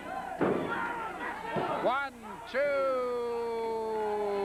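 A heavy body hitting the wrestling ring mat with a loud slam about half a second in. About two seconds later comes one long drawn-out yell from a voice.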